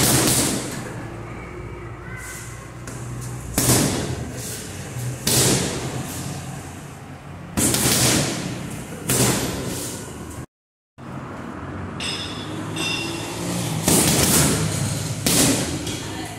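Boxing-gloved punches landing on a hanging heavy bag: single heavy thuds one to a few seconds apart, each trailing off slowly, with a brief gap of silence past the middle.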